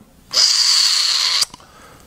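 A person drawing one loud breath in through the nose close to the microphone, lasting about a second.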